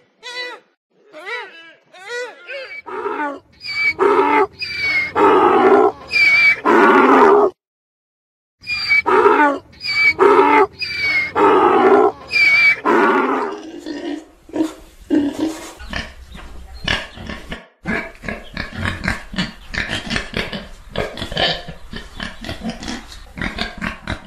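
Deer calls: short pitched calls, then louder drawn-out calls with a brief break about eight seconds in. From about two-thirds of the way through, a wild boar grunts in a fast, rough run.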